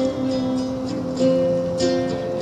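Small-bodied acoustic guitar played solo, several chords struck in turn and each left to ring.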